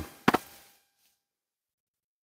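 The tail of a spoken "uh", then a brief mouth noise about a third of a second in, followed by near silence.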